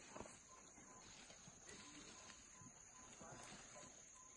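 Near silence: faint outdoor background with a steady high-pitched whine and a few faint soft clicks.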